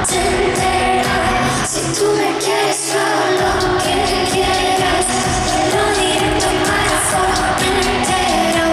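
Live pop song played over an arena PA: a woman's lead vocal over the band track with a beat. About two seconds in, the bass drops out for about a second and a half, then comes back in.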